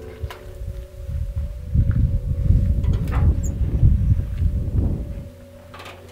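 Low, uneven rumbling noise on the microphone of a handheld camera being carried outdoors, loudest in the middle and dropping away about five seconds in. Faint background music with held notes runs underneath.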